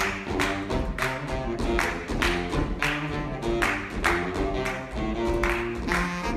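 Saxophone ensemble playing a tune in sustained notes over a steady beat.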